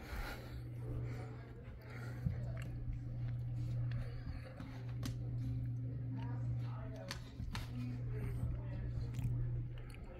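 Indoor room tone: a steady low hum, with faint background voices and music and a few light clicks and crackles.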